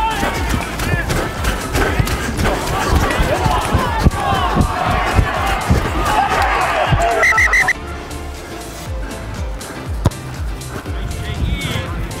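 Touchline spectators shouting and cheering over each other as a try is scored, the voices busiest just before the edit; about eight seconds in the sound cuts to quieter background voices.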